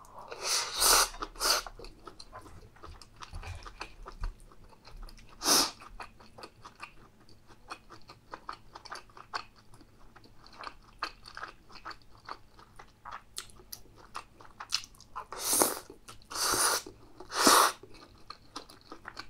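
Close-miked chewing of chewy stir-fried gopchang (intestines): dense soft wet smacking and clicking. It is broken by a few loud short breathy bursts, one near the start, one about five seconds in, and three close together near the end.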